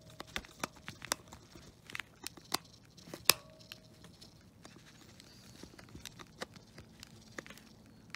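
Metal screwdriver working a small screw in a plastic toy housing: a string of irregular small clicks and scrapes, thicker in the first half, the sharpest about three seconds in, with rustling of the plush fur being handled.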